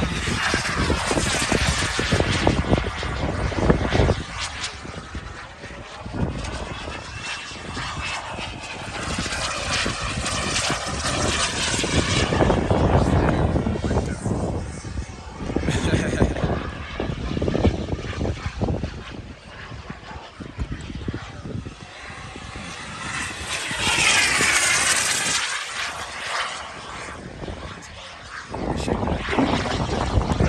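Turbine engine of a BVM BDX radio-controlled sport jet on high-speed passes. Its jet noise swells and fades as it sweeps past, loudest in the first few seconds and again about twenty-four seconds in.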